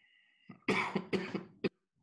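A man coughing twice in quick succession, followed by a short, sharp third cough.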